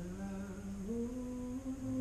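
A single voice humming a slow melody in long held notes, stepping up in pitch about a second in.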